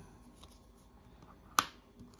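One sharp click of a coin being set down against other coins on a tabletop, about one and a half seconds in, with a few faint handling ticks before it.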